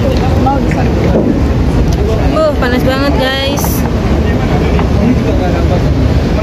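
Wind rumbling steadily on a handheld phone's microphone, under the chatter of people nearby; one voice rises high and warbles in the middle.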